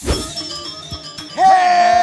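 TV show logo sting: a swoosh with a low hit, then about a second and a half in a loud, long held vocal note over the music.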